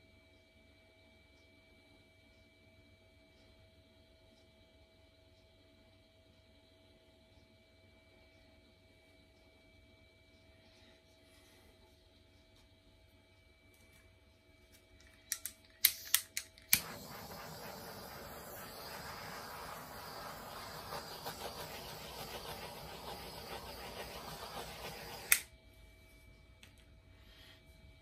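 An electric air blower, the kind used to push paint across a canvas in a Dutch pour, clicks a few times and is switched on, runs with a steady rush of air for about eight seconds, then is switched off with a click near the end.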